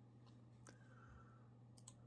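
Near silence: a faint steady hum with a few faint computer mouse clicks, one about a third of the way in and two in quick succession near the end.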